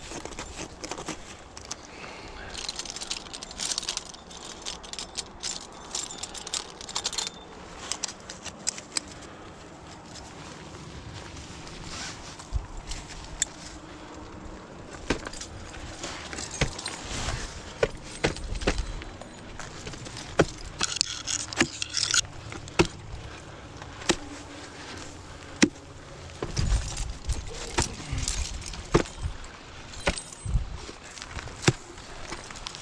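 Ice axes and crampons striking and scraping into snow-covered ice, in irregular sharp knocks, with carabiners and other metal climbing gear clinking.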